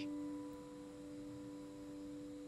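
Quiet background music score: a soft chord of several steady tones held without change.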